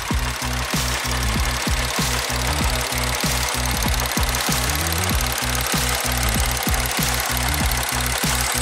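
Mitsubishi Mirage's three-cylinder engine idling with the hood open, a steady low running sound with an even pulse about four to five times a second.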